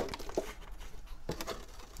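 A plastic bottle of household hydrogen peroxide handled and set down on the bench: a sharp click right at the start, then a few faint knocks.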